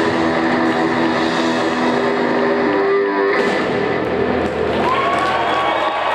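Electric blues-rock guitar playing with a band, holding sustained notes. The chord changes about three seconds in, and a note rises in pitch near the end.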